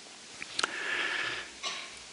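A man breathing in audibly through the nose into a close microphone for about a second, after a faint mouth click, in a pause between spoken sentences.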